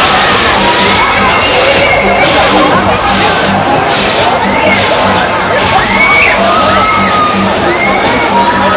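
Riders on a fairground thrill ride screaming and shouting, a crowd of voices with many rising and falling cries, over loud music with a steady beat of about two a second.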